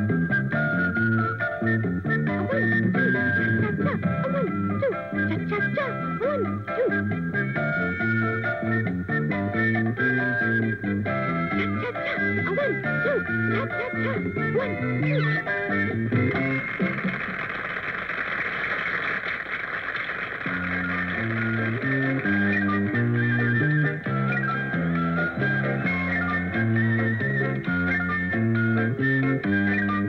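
Upbeat band tune with a plucked bass line stepping from note to note under a higher melody. About halfway through, the bass drops out for roughly four seconds while a hissing noise takes over, then the tune picks up again.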